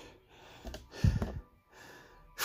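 A man's breathy laughing exhales and snorts, with a short, loud, low thump about a second in.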